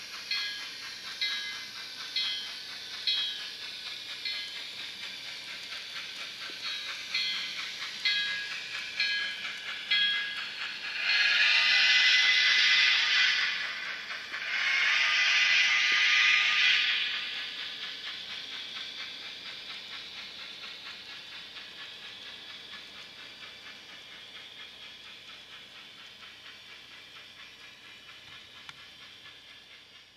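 Sound decoder (ESU LokSound Select micro) of an N scale Kato Mikado model steam locomotive playing regular steam chuffing, with two long whistle blasts near the middle. The chuffing grows steadily fainter toward the end.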